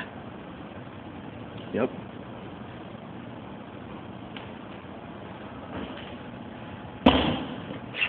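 A person landing from a jump off a balcony railing: one sudden loud impact near the end, followed by a short burst of noise. Before it, only steady background noise and a brief spoken 'yep'.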